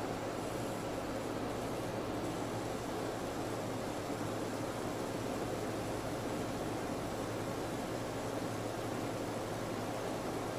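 Steady room tone: an even hiss with a faint low hum, with no events.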